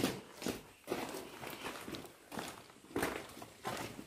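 Footsteps walking on a concrete floor, about two steps a second.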